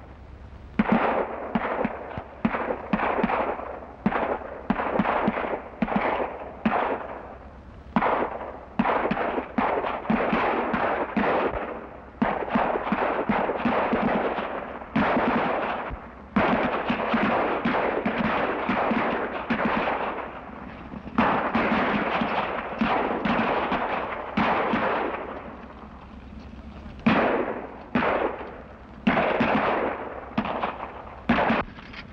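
Heavy, irregular gunfire from many guns: shots in quick runs that often overlap, so their echoing tails run together, with brief lulls between the volleys and a longer lull about three-quarters of the way through. An old film soundtrack's low hum runs underneath.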